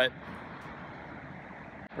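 Steady hum of city traffic heard from a distance. A man's voice says one word at the start, and the hum breaks off suddenly just before the speech resumes.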